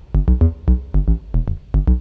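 Modular synthesizer melody sequenced by a Frap Tools USTA, played as short plucked notes at about seven a second. The Falistri envelope runs in transient mode, so each note fires with the same short decay and the rhythm stays the same whatever gate length is set.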